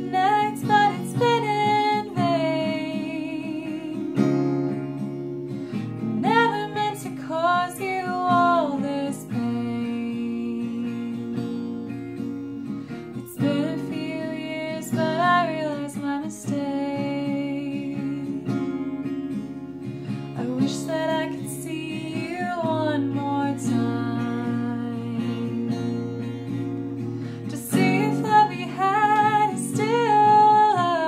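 A woman singing over picked acoustic guitar, her voice coming in phrases with stretches of guitar alone between them.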